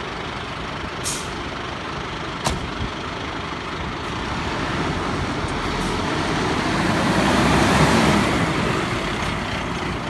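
Fire engine's diesel engine running as it drives in and passes close by, growing louder to a peak about eight seconds in, then easing off. A short hiss about a second in and a sharp click a little later.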